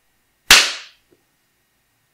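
A single sharp hand clap about half a second in, with a short ring-out after it: a sync clap that gives a mark for lining up the footage of more than one camera.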